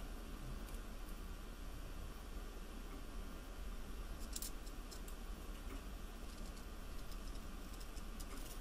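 Light, sparse clicks and rustling from a fabric strip and wire being pulled through a metal tube-making tool, with a short cluster of clicks about four seconds in, over a steady faint hum and hiss.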